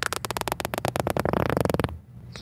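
Beatbox lip roll: air siphoned inward through lips pursed on one side makes them flutter in a rapid train of pops that run together into a buzz near the end. It is very faint, the first-stage lip roll a beginner gets by sucking air through the lips while dropping the jaw.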